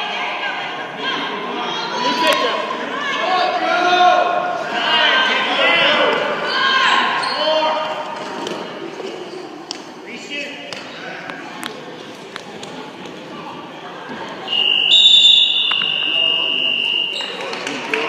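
Shouting from the gym bench and stands during a wrestling bout, with a few thuds on the mat. About three-quarters of the way through, the scoreboard buzzer sounds one steady tone lasting about two and a half seconds, signalling that time is up.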